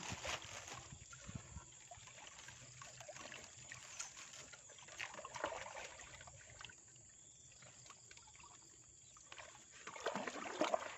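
Faint trickling and light splashing of water with soft rustling as a wet blue nylon mesh net is handled and lifted in a pond. The sounds come irregularly and fall quieter for the last few seconds.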